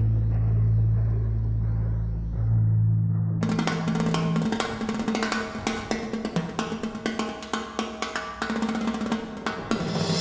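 Instrumental break in a reggae song: low bass notes alone at first, then about three and a half seconds in a busy drum-kit passage with rapid snare strokes and rolls comes in.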